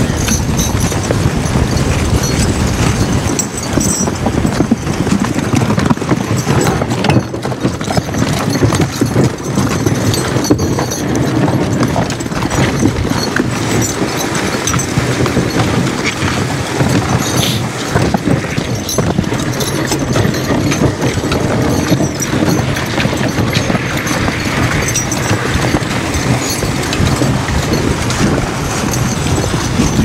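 A team of two draft horses, a Suffolk Punch and a Percheron, walking steadily in harness on packed snow and ice, their hoofbeats clopping over the continuous scrape of the sled runners and the rattle of the harness and trace chains.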